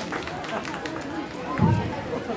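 Chatter of many children's voices from a crowd, with one brief low thump about one and a half seconds in.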